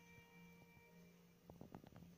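Near silence: a faint steady hum, with a few faint ticks in the second half.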